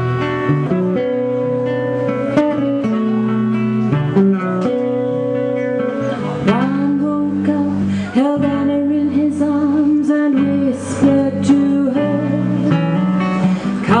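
Live folk band playing an instrumental passage: strummed acoustic guitar over electric bass. In the second half a saxophone comes in with long held melody notes, scooping up into them.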